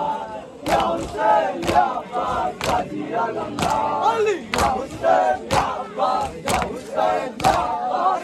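A group of men chanting a mourning chant together while beating their chests in unison (matam). Sharp hand slaps fall about twice a second over the voices.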